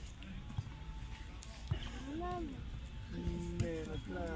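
Youth football match in play: players and onlookers call out over a steady low outdoor rumble, with a few sharp thuds of the ball being kicked.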